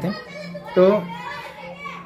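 Children's voices in the background, higher-pitched calls and chatter, over a steady low hum, while the man pauses; he says a short word about a second in.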